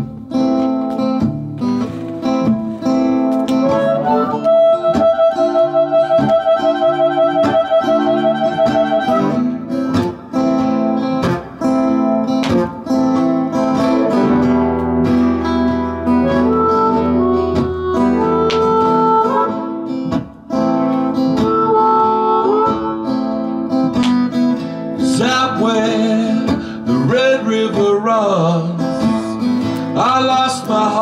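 Strummed acoustic guitar with a harmonica playing the melody over it, as the instrumental intro of a song. The harmonica holds one long, wavering note from about four to nine seconds in, then plays shorter phrases.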